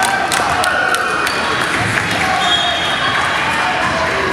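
Indoor basketball game: a basketball bouncing on the hardwood gym floor, mostly in the first second or so, with short sneaker squeaks and players' voices, echoing in the large hall.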